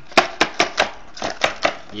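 A clear plastic packaging box being handled, with a quick, uneven run of about seven sharp plastic clicks and knocks.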